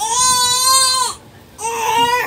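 An 11-month-old baby's loud, high-pitched voice: one long held call lasting about a second, then a second call starting near the end.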